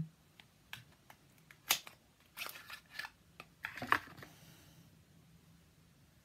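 A small cardboard product box being opened and a small plastic pot of lip and cheek balm slid out and handled: a scatter of light clicks, taps and scrapes with faint rustling over the first four seconds, the sharpest about two seconds in.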